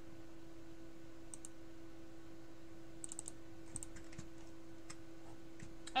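Faint, scattered clicks of a computer keyboard, a few taps spread irregularly over several seconds, over a steady low hum.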